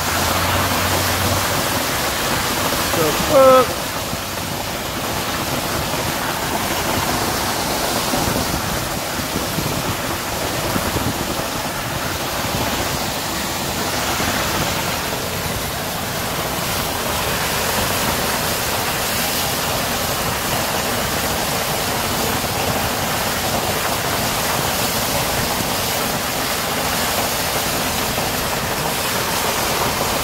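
A rooftop water tower being drained. Water gushes from an open pipe onto the gravel roof in a steady, unbroken rush of splashing.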